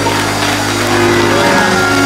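Church organ music holding sustained chords during a praise break, with steady held notes and no clear beat.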